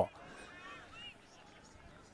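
Faint distant calls or shouts with wavering pitch in the first second, then near silence.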